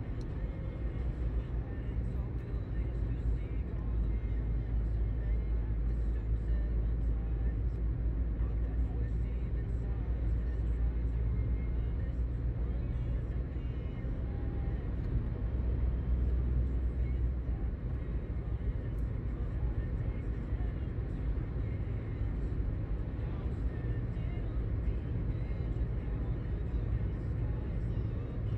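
Steady low rumble of tyre and engine noise inside a moving car's cabin, cruising at an even speed.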